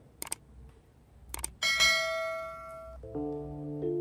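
Subscribe-button sound effect: two quick pairs of mouse clicks, then a bright bell ding that rings out for about a second, and near the end a lower chime of several held tones.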